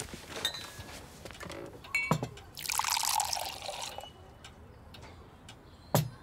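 Orange juice poured from a glass jug into a drinking glass for about a second and a half, with a clink of glass just before it.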